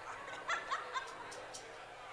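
A person laughs briefly, three quick bursts about half a second in, over the background murmur of a church congregation chatting.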